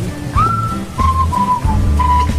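A whistled tune: held notes that glide up at their starts and step between pitches, over a low, steady bass line.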